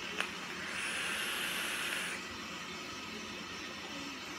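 Draw on an e-cigarette tube mod and tank: a click, then about a second and a half of hiss as air is pulled through the atomiser while the coil fires and vaporises the e-liquid.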